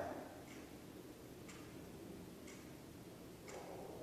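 Wall clock ticking faintly and evenly, once a second.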